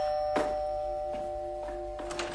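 Doorbell chime ringing, its held tones slowly fading.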